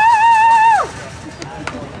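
A spectator's long, high-pitched cheering yell, held on a wavering pitch and then sliding down and stopping a little under a second in. Quieter sideline sound follows.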